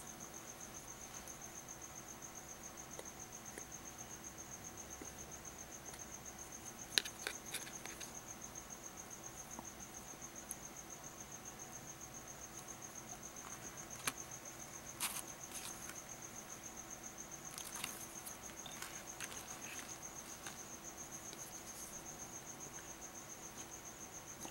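Faint, steady high-pitched insect chirring that pulses evenly, with a few soft clicks and taps as small cards are handled.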